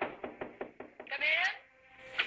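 Knocking on a wooden door, six or seven quick raps in about a second, followed by a short, rising voice.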